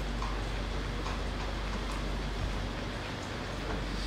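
Steady room noise in a lecture hall during a pause in speech: an even hiss with a constant low hum, picked up by the open podium microphone, with a few faint ticks.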